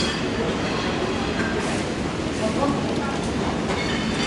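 Steady low rumble of a busy buffet dining room, with distant voices and a few short clinks of utensils and dishes.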